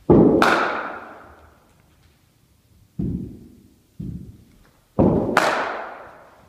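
Cricket bat striking the ball twice, about five seconds apart: each sharp crack comes just after a dull thud and rings on in the echo of the hall. Two shorter dull thuds fall in between.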